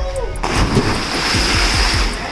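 A person jumping from a height into a deep open well: a sudden big splash about half a second in, then the hiss of churning water. A music track with a steady beat plays underneath.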